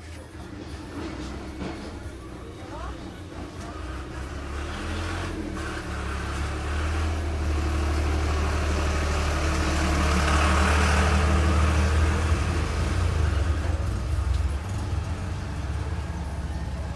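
A low rumble that builds over about ten seconds and then eases off, with indistinct voices.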